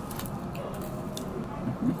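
Restaurant table sounds: a steady low background murmur with a few light clicks of chopsticks and tableware, and a short 'mm' of someone eating near the end.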